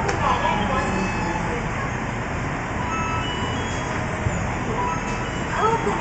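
Station platform ambience beside a stopped electric commuter train: a steady low rumble and hum, with people's voices just after the start and again near the end.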